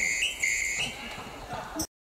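A high, whistle-like tone repeating a two-note pattern, a long note then a short higher one, about twice a second. It stops a little under a second in, and the sound cuts off abruptly near the end.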